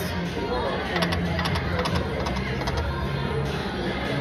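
Konami Pharaoh's Power slot machine spinning its reels, with the machine's electronic game music and tones, over casino background chatter.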